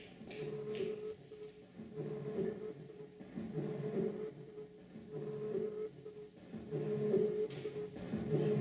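Homemade analog looper, a modified turntable playing back a magnetic disc, repeating a short tonal loop about every second and a half with brief gaps between repeats.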